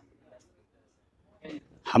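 A pause in a man's speech: near silence, a short faint sound about one and a half seconds in, then his voice resumes right at the end.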